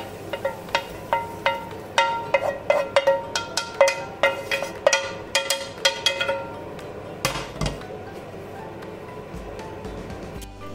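A wooden spoon knocking and scraping against a frying pan as fried onions are emptied onto a plate: quick, irregular taps, each ringing briefly, about three a second. One louder knock comes a little after seven seconds, then it goes quieter.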